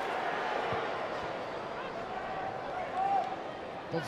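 Steady crowd noise of football supporters in a stadium: a hum of many voices, with a faint held voice rising out of it about three seconds in.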